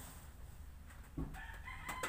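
A rooster crowing, one long call starting a little past a second in.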